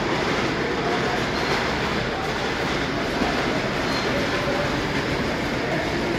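HO-scale model coal train running steadily on its track, over the constant murmur of voices in a busy exhibition hall.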